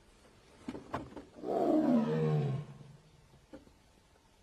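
Bengal tiger roaring once, a single call of just over a second that falls in pitch, with a few faint clicks around it.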